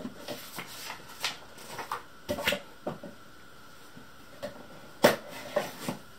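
Cardboard box being handled and opened by hand: scattered rustles, scrapes and light taps as the lid of a white inner box is worked open, with one sharp knock about five seconds in, the loudest sound.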